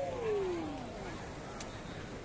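A person's long drawn-out vocal call that slides steadily down in pitch over about the first second, over low background noise.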